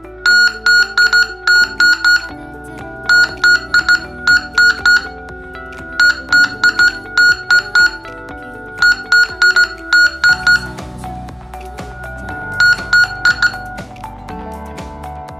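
CW receiver's beat-note tone from a homebuilt shortwave CW transceiver kit, keyed on and off in short and long high-pitched beeps like Morse code as the 7.023 MHz test signal is made and broken at the antenna input, in five groups. Background music plays underneath.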